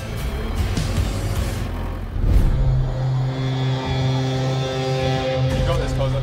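Background music with a low held drone over the running engine of an old front-end loader; a loud low hit comes about two seconds in.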